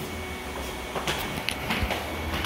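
Steady low machine hum, with a few short light knocks in the second half.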